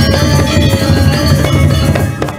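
Balinese gong kebyar gamelan playing loud and dense: many bronze kettle gongs and metallophones ringing in rapid strokes over low drum and gong tones.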